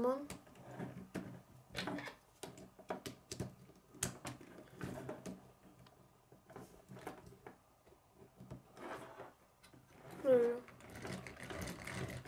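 K'nex plastic pieces clicking and snapping as they are pushed onto the rods and connectors of a model ride, in a run of sharp, irregular clicks. Near the end the plastic gears and arms clatter as the built ride is spun by hand.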